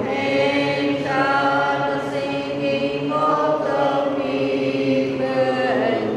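A choir singing a hymn in long held notes, the melody moving from note to note about once a second.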